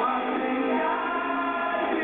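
Live rock band playing, with electric guitar and a sung vocal line.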